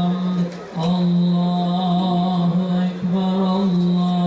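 Men's voices chanting a religious invocation of "Allah" in unison, in long drawn-out held notes at one steady pitch, with two brief breaks for breath.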